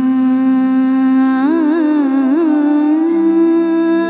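Classical Indian vocal music: a singer holds one long note, breaks into a few quick wavering turns about halfway through, then settles back onto a steady held note.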